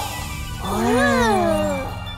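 A cartoon cat meowing: one drawn-out call about a second long that rises and then falls in pitch, over light background music. A brief sparkly shimmer plays just before it.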